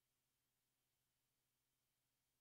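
Near silence: only a very faint steady hiss and low hum.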